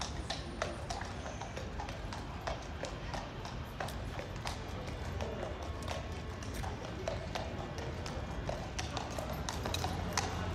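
Shod hooves of two Household Cavalry horses clip-clopping on the paved road as they ride out, in an uneven run of sharp strikes.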